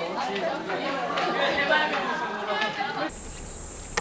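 Several people talking at once in overlapping chatter. About three seconds in the voices stop and a steady high-pitched buzz with a low hum takes over.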